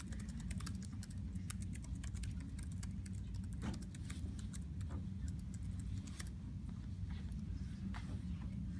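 Typing on a laptop keyboard: quick, irregular key clicks over a steady low room hum.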